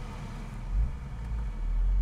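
Deep, low rumble inside the cabin of a BMW 130i with its N52 inline-six running at low speed, swelling briefly about a second in and again near the end.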